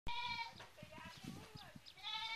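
A goat bleats once, a short call right at the start, followed by faint knocks.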